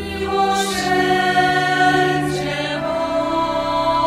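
Sisters' choir singing a slow hymn in long held notes, the notes changing about half a second in and again near three seconds.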